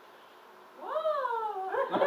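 A person imitating a cat's meow: one long call that rises and then falls in pitch, followed by a short second rise near the end.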